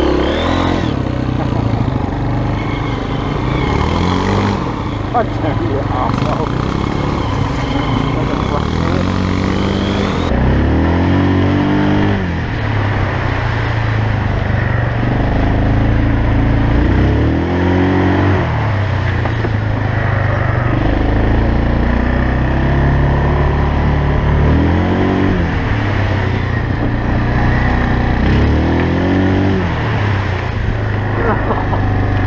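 Honda CRF230F dirt bike's single-cylinder four-stroke engine under way on a trail, revving up and easing off over and over. Its pitch climbs in runs every few seconds, over a steady rumble.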